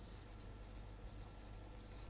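Marker pen writing on paper, a faint scratching of short strokes over a low steady hum.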